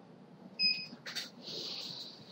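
A short, faint electronic beep of two steady tones about half a second in, followed by a brief soft click and a short hiss.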